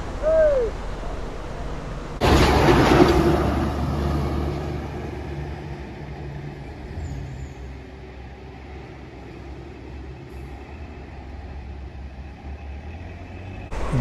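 A road vehicle's engine running. It starts abruptly about two seconds in and fades away over several seconds.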